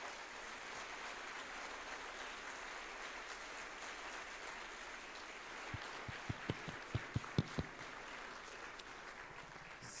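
An audience applauding steadily after a lecture ends. Partway through, a short run of soft knocks close to the microphone.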